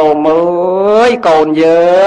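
A Buddhist monk's voice chanting in a drawn-out, sung intonation: two long held phrases of about a second each, each rising slightly at its end.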